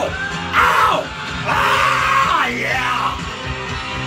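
A man yelling along to a rock song, with several loud shouts that slide down in pitch, over the rock recording playing underneath.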